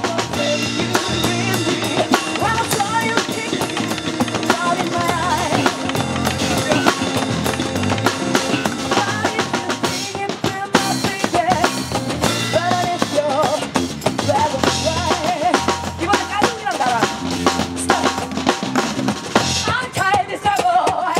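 A live band playing a percussion-heavy number, led by a drum kit with snare, bass drum and rimshots, backed by hand drums and bucket drums, with an acoustic guitar.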